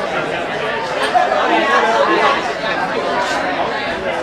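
Crowd chatter: many people talking at once in overlapping conversation, with no single voice standing out.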